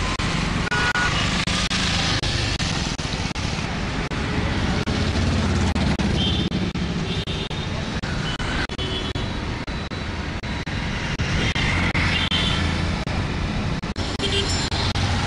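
Street traffic running steadily: vehicle engines and road noise, with a few short high tones over it.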